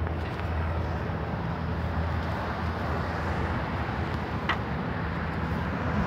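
Steady low rumble of road traffic, with one faint click about four and a half seconds in.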